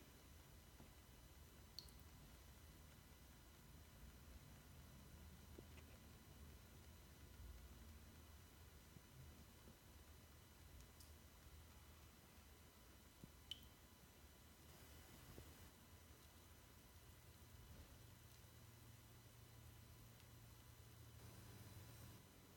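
Near silence: room tone with a faint low hum and a few tiny isolated clicks.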